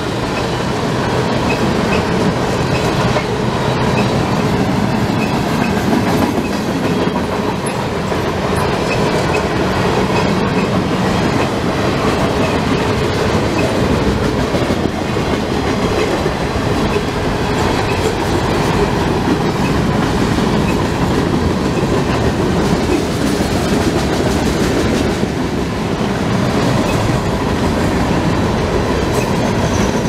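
CSX freight train's cars rolling past close by: a steady, loud noise of steel wheels on rail.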